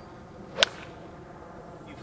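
A golf iron strikes the ball in one full swing, making a single sharp crack about half a second in.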